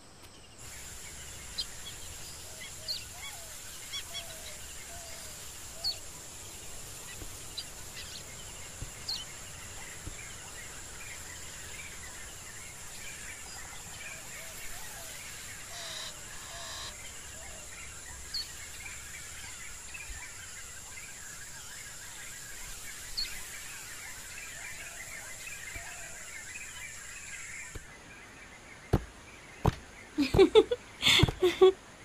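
Outdoor nature ambience: a steady high-pitched insect drone with scattered short bird chirps and calls over it. The ambience stops shortly before the end, followed by a couple of sharp knocks.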